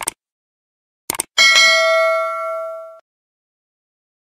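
Subscribe-button animation sound effect: a short click, then two quick clicks about a second in, then a bright notification-bell ding that rings for about a second and a half and cuts off abruptly.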